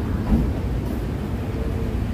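Steady low rumble of outdoor background noise by parked vehicles, with no clear events standing out.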